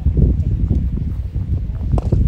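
Distant voices on a training field, over a low, uneven rumble of wind on the microphone.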